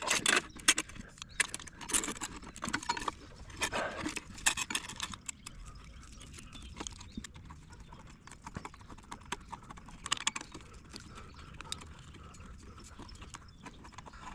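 Stainless steel worm-drive hose-clamp strap clicking and rattling as it is threaded into its housing and its screw is turned with a nut driver. The clicks come quickly and irregularly in the first few seconds, then thin out to scattered ticks.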